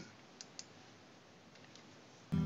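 Near silence, broken by two faint clicks close together about half a second in, made at the computer to start playback in a media player.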